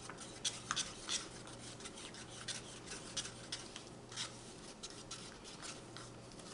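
Wooden craft stick stirring thick acrylic pouring paint in a paper cup, faint irregular scrapes and taps against the cup as drops of silicone are mixed in.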